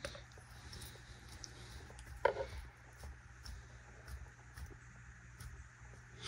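Faint scattered rustling and scratching of a savannah monitor's feet and claws on bark-chip substrate, with one sharper click about two seconds in.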